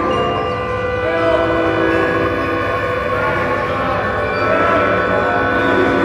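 Live mixed chamber ensemble playing a sustained passage: several held notes sound together as a long chord, some of them wavering, with softer instrumental lines shifting underneath.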